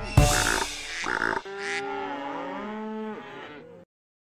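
The last chords of a children's song with a couple of drum hits, then a long cartoon cow moo that bends up and down in pitch and fades out near the end.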